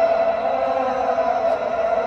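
A chanting voice holding one long note that sags slightly in pitch.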